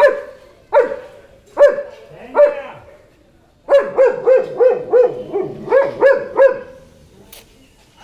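German Shepherd barking: four single barks a little under a second apart, a short pause, then a fast run of about nine barks, around three a second.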